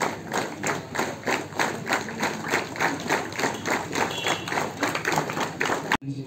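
A group of people clapping together in a steady rhythm, about four claps a second.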